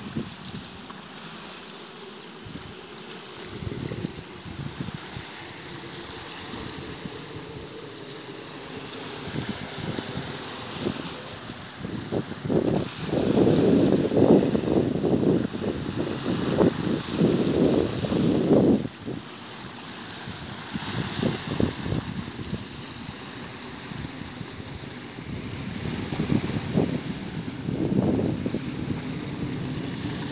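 Wind buffeting the phone microphone in gusts, loudest for several seconds in the middle and again near the end, over small waves washing onto a pebble beach.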